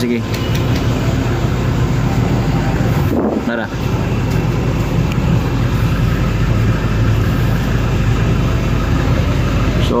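A vehicle engine idling, a steady low drone heard from inside the cabin during refuelling, with a brief voice about three seconds in.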